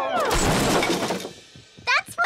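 Cartoon crash sound effect: a noisy, clattering crash of about a second as the two characters wipe out and land, right after the falling tail of a 'whoa' cry.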